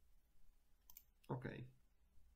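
A single quick mouse-button click, faint and sharp, about a second in, as the Exit button of a software dialog is clicked.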